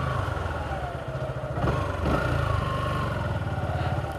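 Motorcycle engine running as the bike is ridden along. The engine note drops about a second in and picks up again near two seconds.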